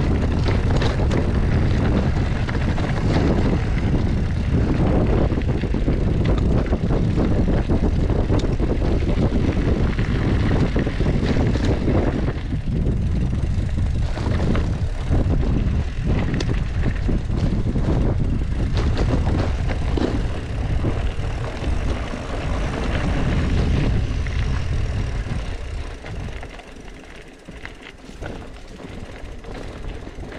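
Wind buffeting the camera microphone as a loaded mountain bike descends rough dirt singletrack, with tyre noise and many small clicks and rattles from the bike and its bags. The rush drops off noticeably about 25 seconds in.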